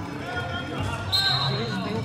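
Spectators' voices in an echoing indoor soccer hall, with knocks of the ball on the turf. Just over a second in, a steady high whistle blast starts and holds for nearly a second: the referee's whistle stopping play.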